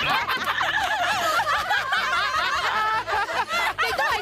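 Several women laughing together, their voices overlapping.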